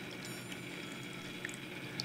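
Woodstock water bell fountain running: water from its small pump bubbling and flowing steadily in the copper bowl, with a faint high ringing tone briefly about a quarter second in.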